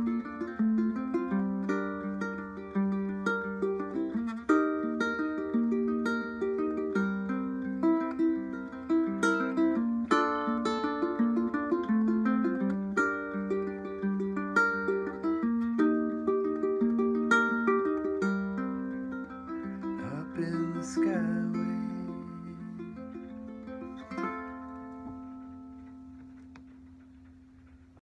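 Tenor ukulele playing an instrumental outro: a run of single plucked notes and chords, then a last chord about three-quarters of the way in that rings and slowly dies away.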